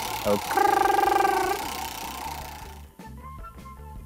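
Background music with soft steady low notes and short higher tones, under a drawn-out vocal 'ooh' held for about a second near the start.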